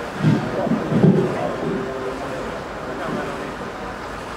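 A man's voice in a few short, indistinct calls over a steady outdoor background hiss; the loudest come in the first second or so.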